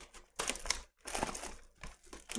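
Plastic wrapping on a trading-card box being crinkled and torn open by hand, in two short bursts.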